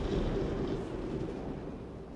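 The dying tail of a deep boom sound effect: a low, noisy rumble that fades away steadily.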